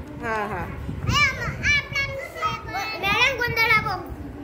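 Young children's voices chattering in a group, high-pitched and in short bursts.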